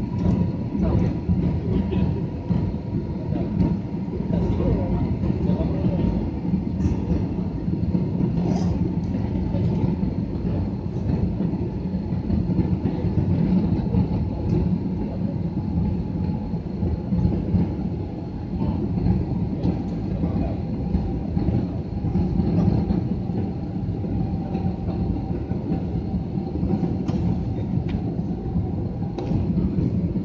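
Jet airliner cabin noise during the approach to landing, heard from inside the cabin: a steady rumble of airflow and engines, with a faint whine that sinks slightly in pitch.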